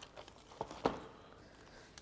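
Faint handling noise of paper craft pieces being moved about, with two light taps, one a little after half a second in and one just under a second in.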